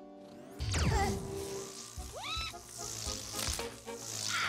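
Animated-film sound effects of sizzling, crackling laser-eye beams over music. There is a sharp falling zap about half a second in and a rising whine a little after two seconds.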